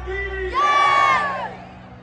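A loud, drawn-out shout by one voice, rising, held for about half a second and then falling away, over the background voices of a large gathered crowd.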